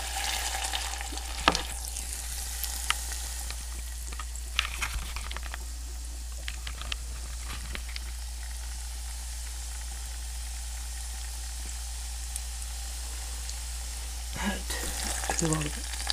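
Liquefied air-duster propellant boiling off in a glass of freezing water: a steady fizzing hiss, with a few sharp clicks in the first seven seconds.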